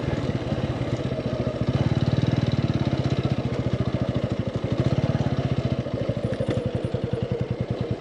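Motorcycle engine running steadily, its firing heard as an even, rapid pulse.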